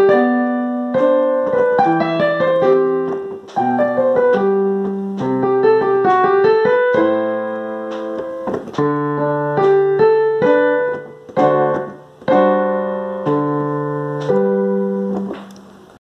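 Piano accompaniment playing alone in a slow, gentle tempo, struck chords and notes ringing and decaying, with the final chord fading out near the end.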